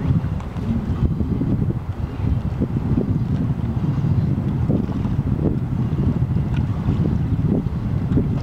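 Wind buffeting the microphone: a loud, gusty low rumble with no clear tone from the steamboat.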